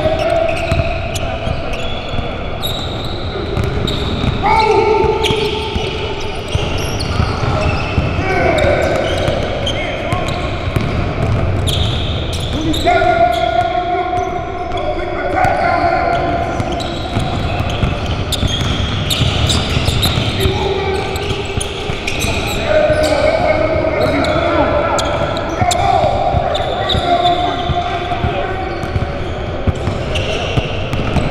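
Basketball dribbled and bouncing on a hardwood gym floor, a run of short knocks all through, with indistinct voices of players in the gym.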